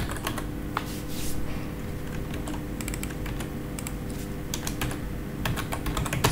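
Typing on a computer keyboard: key clicks in short, irregular bursts with pauses between them, over a steady low hum.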